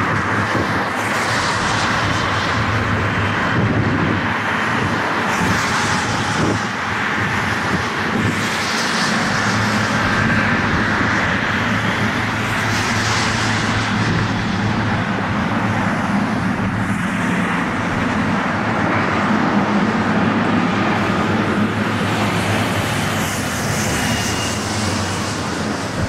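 Air Canada Boeing 777's GE90 turbofan engines running close by as the jet rolls onto the runway for takeoff: a steady, loud jet roar and blast.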